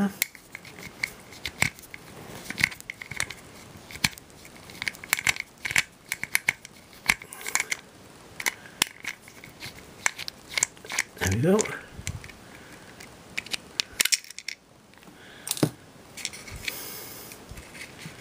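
Screwdriver working a small screw out of a Flip Ultra camcorder's housing: irregular small clicks, taps and scrapes of the metal tool on the screw and the plastic and metal case.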